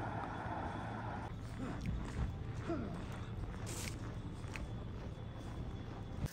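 Quiet outdoor street background: a steady low rumble with faint distant voices and a few soft ticks.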